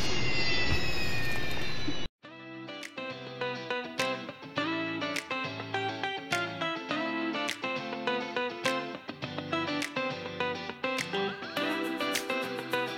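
A camera drone's propellers whining close by, several tones sliding slowly down in pitch, until the sound cuts off suddenly about two seconds in. Background guitar music with a steady beat follows.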